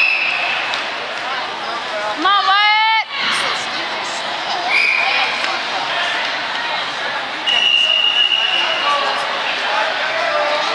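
Steady crowd chatter echoing in a gym at a wrestling tournament, with a loud, wavering shout a couple of seconds in. Short high steady tones sound a few times, the longest for over a second near the end.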